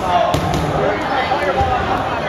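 Many voices shouting and chattering in a gymnasium. A rubber dodgeball bounces sharply off the hardwood floor about a third of a second in.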